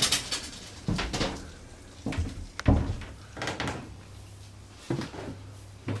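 About six irregular knocks and thuds in a small steel room over a faint steady low hum: footsteps and handling bumps as someone walks through a boat's interior.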